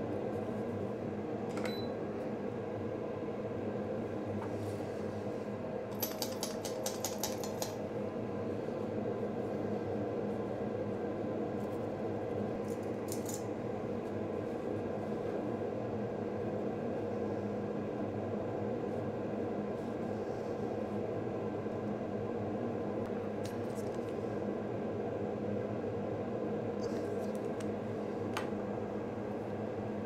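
Steady hum of a workbench fan with a short run of quick light clicks about six seconds in and a few single ticks scattered through the rest.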